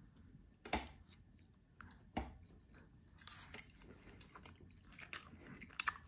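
Quiet chewing of food, mouth open near the microphone, with a few short wet smacks and clicks scattered about a second apart.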